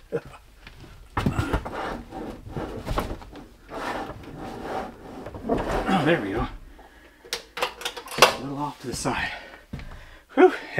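A man grunting and breathing hard as he lifts a heavy wall-mount lithium battery, then several sharp clunks as the battery drops onto its wall bracket, the loudest about eight seconds in.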